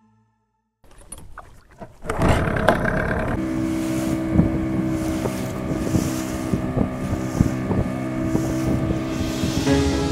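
Outboard motor of a small fishing boat running steadily under way, with wind on the microphone and rushing water. It fades in about a second in and comes up loud about two seconds in.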